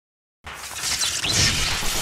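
Dead silence for about half a second, then a TV show's intro sound effect comes in: a rush of noise with a few quick sweeping streaks, growing louder.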